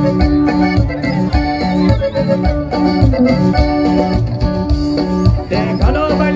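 Loud band music led by an electronic keyboard playing sustained organ-like chords and a melody over a steady bass beat.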